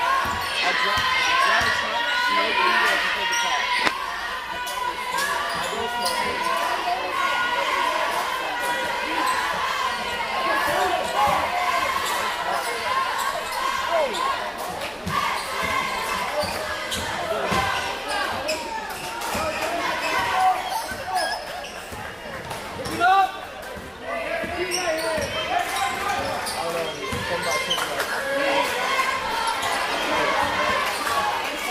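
Basketball bouncing repeatedly on a hardwood gym floor during play, over steady crowd chatter in a large gymnasium, with one brief loud sound about 23 seconds in.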